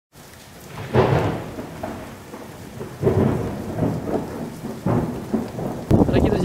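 Thunder rumbling over steady rain, with three rolls that break out about a second, three seconds and five seconds in and each fade away.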